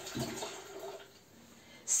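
Water poured from a plastic bottle into an electric kettle, trickling faintly and stopping about a second in.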